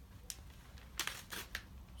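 A sheet of notepaper being handled and torn, a few short crisp rips and rustles, the loudest about a second in; the sheet is torn through by mistake.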